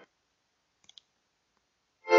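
Near silence in a break in the music, with two faint clicks close together about a second in.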